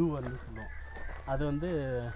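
A rooster crowing, with a man talking over it.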